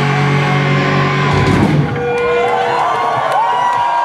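A live rock band's final chord rings out and cuts off a little under two seconds in. High held tones follow, gliding up and sustaining, over crowd shouts.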